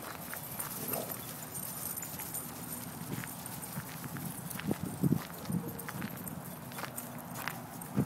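Uneven crunching steps on gravel, from a person walking and dogs trotting, with a few brief low sounds about five seconds in.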